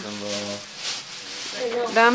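People talking, with one voice held steady at the start, and the rustle of gift-wrap and tissue paper in the gaps.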